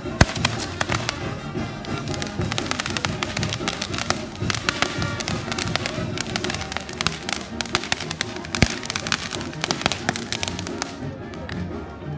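Handheld spark-spraying firework frames crackling and popping rapidly, with a sharp bang just after the start and another about two-thirds of the way through; the crackling dies away about a second before the end. Band music plays throughout underneath.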